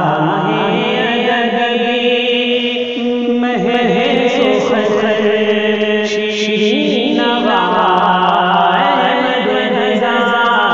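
A man's voice singing an Urdu devotional kalam (manqabat) into a microphone, in long held lines with slow ornamental turns and glides in pitch.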